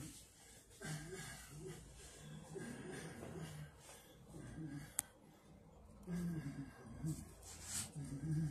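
A man's faint voice and breathing in a small room, with one sharp click about five seconds in.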